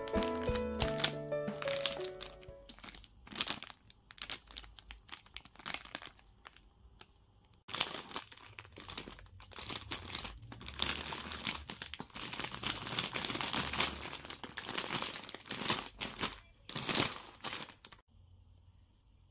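Plastic food wrappers crinkling as they are handled: a sweets packet and bagged instant-noodle packs. The rustling comes in irregular bursts and turns dense and near-continuous from about eight seconds in.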